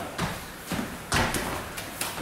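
Several people landing burpees on a rubber gym floor: about four scattered thumps of feet and hands hitting the mat.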